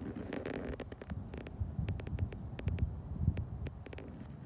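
Wind rumbling on a phone microphone outdoors, with scattered sharp clicks and a brief rustle in the first second.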